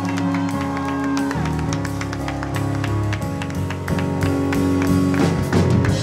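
Live gospel praise band playing: sustained keyboard chords over a steady drum beat, with the congregation clapping along.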